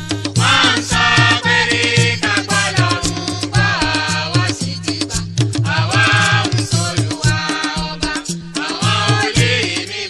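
West African popular dance music with a Latin, salsa-like feel: a steady percussion beat under a melodic lead line that bends up and down in pitch.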